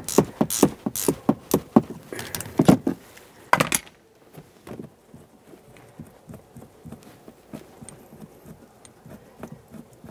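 Ratcheting wrench clicking in quick strokes, about three a second, as it backs off a shock absorber's upper mounting nut. After about four seconds the clicking stops and only faint light ticks remain as the loosened nut is turned by hand.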